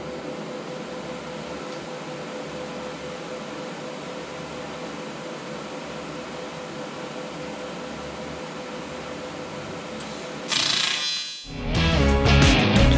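Steady hum and hiss of a TIG welder's cooling fan running idle, with one constant tone. Near the end comes a brief loud hiss, and then rock music with guitar starts.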